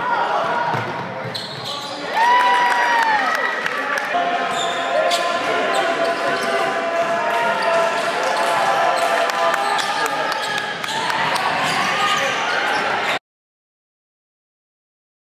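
Basketball game sound: spectators and players shouting, with sharp thuds of the ball bouncing on the court. The sound gets louder about two seconds in and cuts off abruptly near the end.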